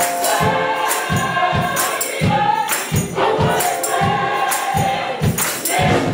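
Gospel music: voices singing together over a steady drum beat, with bright, jingling percussion on top.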